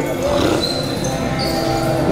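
Indistinct voices over background music with a few held notes, and some dull thumps.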